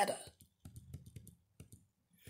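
The last word of a spoken line, then a quiet pause holding a few faint, scattered clicks.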